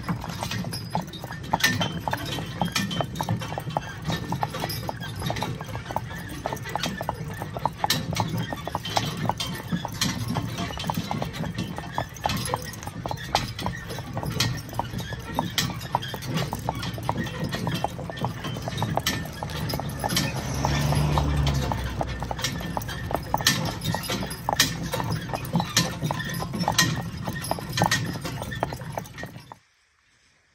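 Hoofbeats of a pair of Percheron draft horses clip-clopping along a gravel lane and then a paved road while pulling a cart, over a steady low rumble. The sound stops abruptly just before the end.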